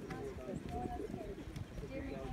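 A pony's hoofbeats cantering on a sand arena, with people talking in the background.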